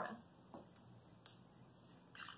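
Near silence: room tone with a few faint, brief clicks in the middle.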